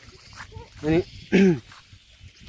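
Speech only: a young man's voice in two short utterances, the second falling in pitch.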